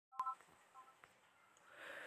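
Smartphone alert tone: a brief electronic beep made of a few steady tones sounding together, with a fainter repeat about half a second later.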